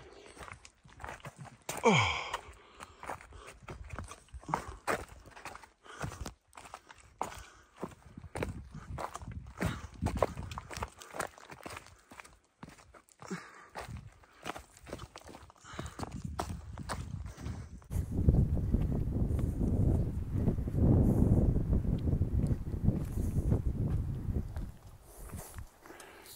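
Hiker's footsteps on a rocky mountain trail, quick uneven steps going downhill. For the last several seconds a louder, low rumbling noise covers them.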